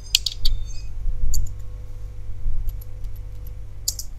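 Computer keyboard keystrokes: a quick cluster of clicks at the start, then a few scattered single keys, over a steady low electrical hum.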